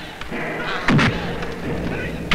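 Dubbed fight-scene impact effect: a sharp double hit about a second in, with a low falling boom after it.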